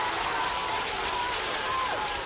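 Swimmers splashing hard through the water in a race, a steady rush of churning water, with shouting voices wavering over it.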